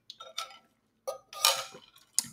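A few light metal clinks of a stainless straw against a metal tumbler, then a sip through the straw about a second in.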